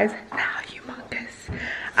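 A woman whispering softly, breathy and without full voice, with a brief low bump about one and a half seconds in.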